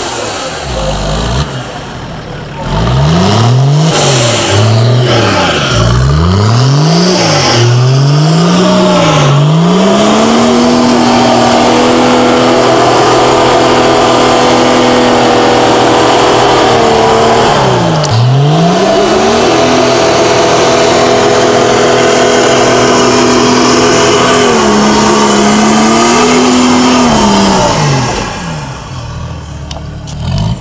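A 1964 Unimog's turbo diesel engine working hard on a steep muddy climb. For the first several seconds the revs rise and fall in quick blips, about one a second. Then the engine is held at high revs under load, with one sharp dip and recovery partway through, and it drops off near the end.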